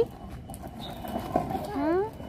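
A short rising vocal sound near the end, over a few faint knocks around the middle.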